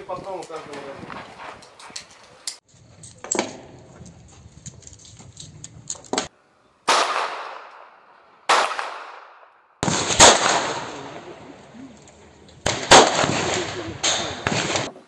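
Pistol shots on an outdoor range: single shots spaced a second or more apart, each trailing off in a long echo.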